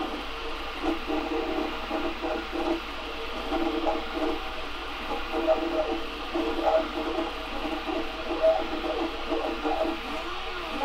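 Prusa i3 Mk2 3D printer running a print: its stepper motors give short pitched tones that change note and stop and start every fraction of a second as the head moves, over a steady fan hiss.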